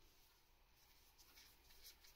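Near silence, with faint scratchy rustling in the second half: cotton-gloved hands handling a bicycle fork part.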